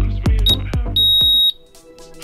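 Electronic workout music with a steady pounding beat, overlaid by an interval timer's high countdown beeps: a short beep about half a second in, then a long beep about a second in marking the end of the work interval. The beat cuts off with the long beep, leaving only faint music.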